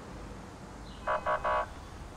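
Three short beeps in quick succession about a second in, over low steady background noise.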